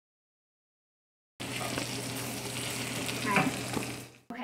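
Boiled ravioli frying in butter in a skillet: a steady sizzle that starts abruptly about a second and a half in.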